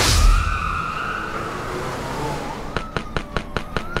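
A whoosh at the cut, then a police siren wailing, its pitch falling slowly and rising again. A fast, regular clicking joins in during the second half.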